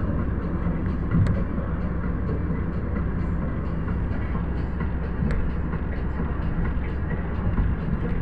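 Steady road and engine noise inside a moving car's cabin, with two brief clicks, one about a second in and one about five seconds in.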